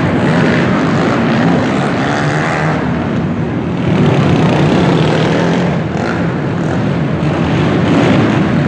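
Engines of several racing quads (ATVs) revving up and down over the jumps of an indoor dirt motocross track.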